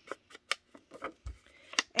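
A sponge-tipped ink dauber brushed and dabbed along the edge of a paper square to distress it with peach ink, giving a run of short scratchy strokes at an uneven pace.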